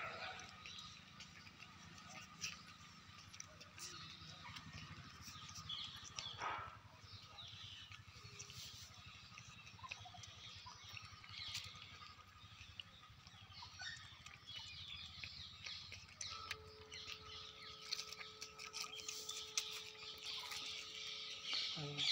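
Faint outdoor background with small birds chirping throughout. A steady tone joins in for the last six seconds or so.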